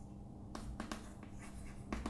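Chalk writing on a chalkboard: faint scratching with a few short sharp taps of the chalk, the strongest near the end.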